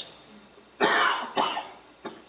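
A man coughing twice into his fist, the first cough a little under a second in and the second about half a second later.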